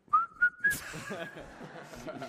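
A person whistling one short note that slides up and then holds for about half a second, followed by voices talking.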